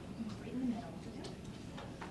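Faint murmur of voices with a few light clicks scattered through it.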